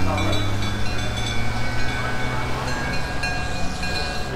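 Heavy vehicle engines running steadily: green Bedford fire engines driving past close by, with a Chieftain tank's engine running behind them.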